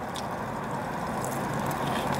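Steady low hum of a car idling in park, heard inside its cabin, with a few faint clicks.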